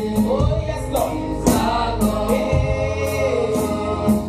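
Live gospel worship song: a woman sings lead into a handheld microphone, with a second singer on backing vocals, over band accompaniment with a bass line and percussive hits.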